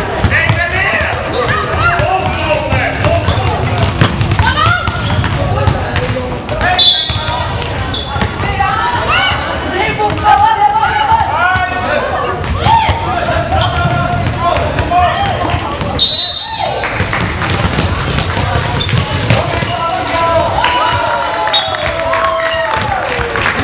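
Indoor basketball game: players and spectators calling and chattering, and a basketball bouncing on the hall floor. Two short referee whistle blasts sound, about 7 seconds in and again about 16 seconds in.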